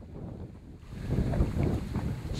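Wind buffeting the microphone: an uneven low rumble that grows louder about a second in.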